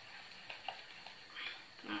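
Faint stirring of thick cornmeal porridge (mămăligă) in a saucepan: a few light clicks and scrapes of the utensil against the pot.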